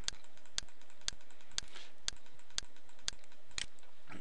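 Computer mouse clicking at a steady pace, about two sharp clicks a second, as the scroll arrow is clicked to scroll the drawing down.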